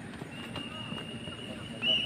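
Runners' footfalls on a dirt track amid background voices, with a long, high, steady tone that gets louder near the end.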